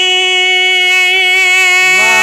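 A man's voice holding one long, steady sung note through a microphone, a drawn-out vowel of sung Urdu poetry (naat recitation).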